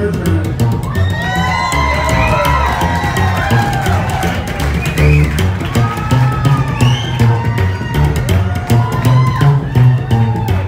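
Live rockabilly band playing: an upright bass plucked and slapped keeps a steady beat of low notes with percussive clicks, while an electric guitar plays lines whose notes bend up and down above it.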